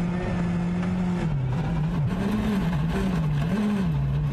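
Hyundai rally car's engine heard onboard at speed on a gravel stage. It holds a steady high pitch for about a second, then the revs drop and rise and fall repeatedly through a series of bends.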